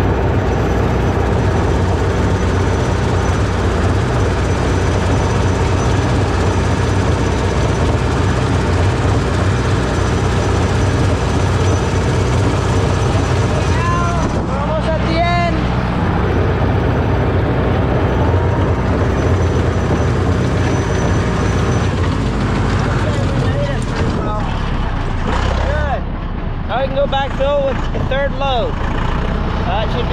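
Deutz D 6006 tractor's diesel engine running steadily under way, driving the PTO spreader, with a brief dip in level about four seconds before the end.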